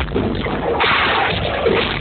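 Loud techno or tech-house DJ music from a club sound system, muffled with no high end. About a second in, a hissing noise sweep rises over the thinned-out bass.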